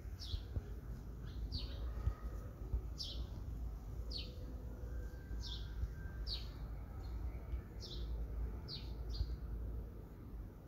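A bird chirping repeatedly: short, falling chirps about once a second, over a faint low rumble.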